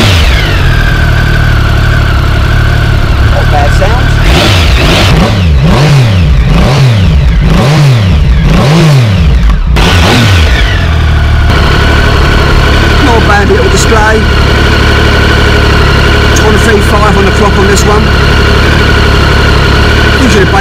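Triumph Sprint ST 1050's three-cylinder engine running just after start-up. The throttle is blipped several times in quick succession midway, each rev rising and falling. It then settles into a steady idle.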